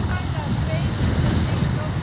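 Wind rumbling on the microphone over the steady wash of ocean surf.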